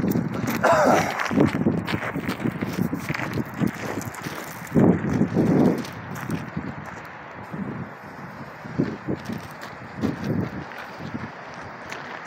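Footsteps crunching on gravel as people walk away, with a few short bursts of low voices between them.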